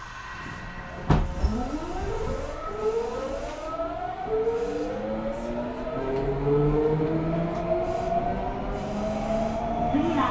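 Nagoya subway 5050-series train accelerating on its GTO-VVVF inverter, which still runs its original, unmodified software: several tones rise steadily in pitch, stepping up in stages, as the train gathers speed. Two knocks about a second in, as it starts to move, are the loudest moments.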